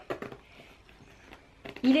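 Faint rustling and handling of a fabric cosmetics pouch as it is opened, with a few soft clicks at first; a woman starts speaking near the end.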